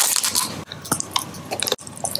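Close-miked mouth sounds of eating a chocolate lollipop: a short, dense rustle at the start, then scattered sharp clicks, smacks and bites as the candy goes into the mouth.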